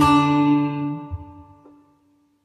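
A setar note on mi plucked once and left to ring, fading away over about two seconds. A lower ringing tone stops with a faint knock about a second in.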